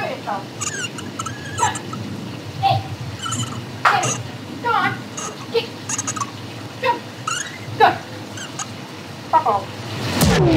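Experimental sound-collage track made of short squeaks and chirps, about two a second, each sliding up or down in pitch, over a steady low background noise. The squeaks are animal-like or voice-like but no words are made out.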